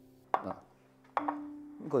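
Two sharp knocks about a second apart, as bamboo steamer baskets are set down on plates, over faint piano music.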